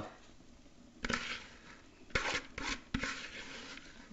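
Grated cabbage being tipped and pushed by hand from a plastic bowl into a metal pan: several short rustling, scraping bursts starting about a second in, with a couple of light knocks.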